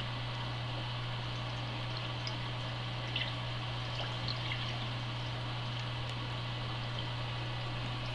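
Water trickling steadily through a home reef aquarium's circulation over a constant low hum, with a few faint ticks.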